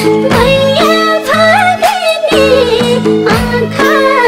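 A Nepali Teej folk song: a woman's voice sings a wavering, ornamented melody over instrumental accompaniment, with a steady beat at about two strokes a second.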